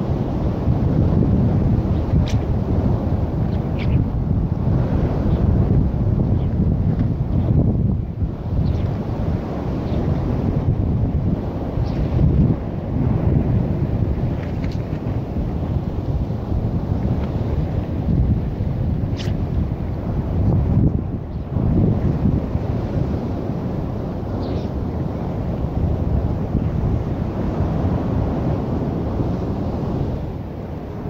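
Wind buffeting the microphone: a loud, low rumble that swells and eases with the gusts. A few faint, brief high sounds come through now and then.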